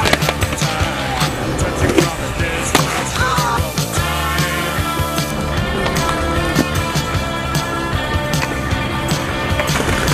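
Skateboarding: wheels rolling on pavement with several sharp clacks of the board popping and landing, over a music track.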